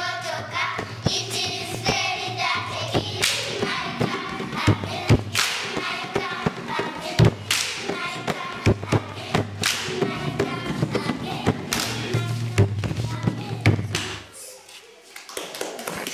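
A group of young children singing a simple English action song together, with sharp thumps and claps scattered through it. The singing stops about a second and a half before the end.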